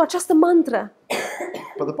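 A single short cough about a second in, between stretches of speech.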